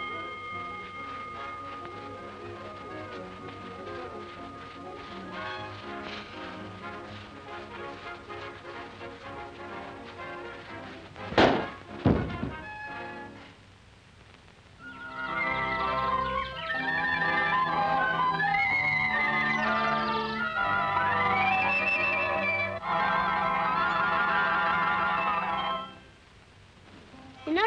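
A ring bell's tone dying away at the start over quiet orchestral film music. About eleven seconds in come two loud thumps under a second apart as a boy boxer is knocked to the floor, and then a louder, lively orchestral tune takes over.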